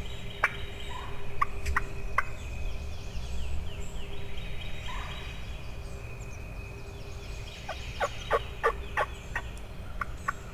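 Wild turkey calling: a few separate sharp notes in the first couple of seconds, then a quicker run of about six notes near the end.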